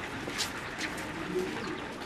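Pigeons cooing, a low wavering sound, over steady street noise, with a couple of light clicks in the first second.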